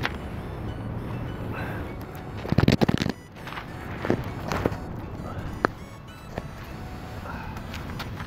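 Handling noise from a phone camera being picked up and moved: a quick run of knocks and scrapes on the microphone about two and a half seconds in, the loudest part, then a few single clicks.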